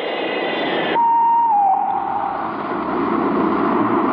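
Science-fiction film spacecraft sound effects: a steady rushing hiss, then about a second in a single electronic tone that slides down a little in pitch and fades, while a deeper rumble sets in.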